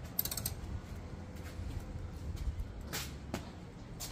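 Faint creaking with a few light clicks, once near the start and twice about three seconds in.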